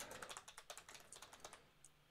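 Faint computer-keyboard typing: a quick run of keystrokes that thins out and stops about a second and a half in.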